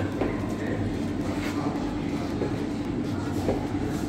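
A steady low rumble with a constant hum, with faint distant voices.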